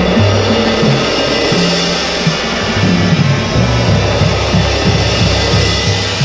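Front-ensemble music from a marching band's pit: a sustained suspended-cymbal wash, rolled with soft mallets, over low bass notes that move every half second or so.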